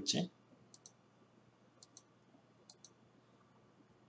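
Three pairs of faint, sharp clicks about a second apart, each pair a quick press and release, from clicking at a computer.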